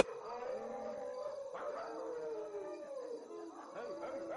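A dog howling faintly: long, drawn-out notes that slide and fall in pitch.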